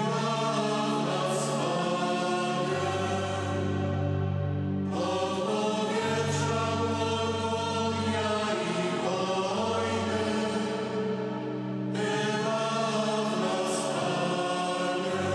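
A mixed choir of men's and women's voices singing a slow Polish Passion hymn in long held chords, with new phrases starting about five and twelve seconds in.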